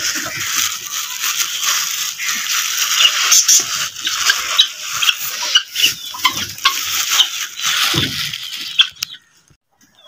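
A flock of budgerigars chattering with many quick, high chirps overlapping. The sound cuts off abruptly about a second before the end.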